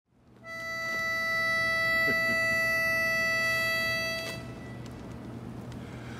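A pitch pipe blown on one steady note for about four seconds, giving a barbershop quartet its starting pitch; then only a faint steady hum.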